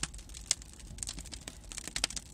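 Pine logs and pallet wood burning in a wood-fired water heater's open firebox, crackling and popping irregularly, with a low steady rumble underneath.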